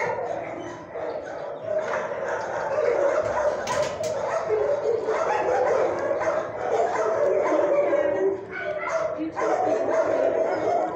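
Dogs in a shelter kennel barking and yipping over one another in a continuous din, with whimpers mixed in. One sharp click sounds about four seconds in.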